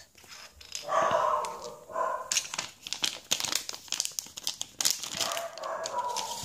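A dog barks twice, about a second in and again a second later, while the plastic Lego minifigure blind bag crinkles as it is handled.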